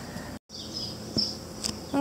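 Steady high-pitched chirring of insects in an outdoor summer chorus, broken by a brief gap of total silence about half a second in.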